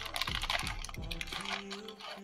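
Clear plastic zip-lock bag crinkling as it is handled and turned, giving a run of small irregular crackles and clicks.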